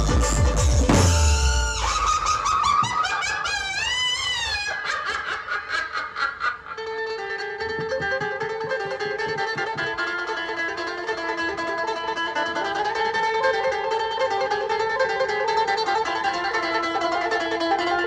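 Dhumal band music: drums and bass stop about two seconds in, leaving a melody with wavering pitch bends. From about seven seconds a rapidly tremolo-picked melody on an electric Indian banjo (bulbul tarang) carries on alone.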